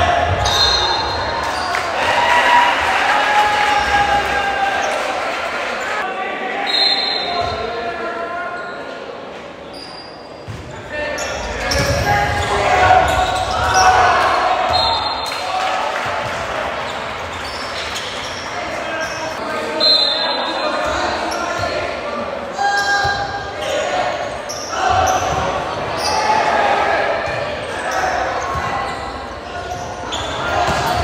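Volleyball rallies in a large echoing gym: the ball is struck and hits the floor several times, while players and spectators call out and chatter throughout. The sound eases briefly between points.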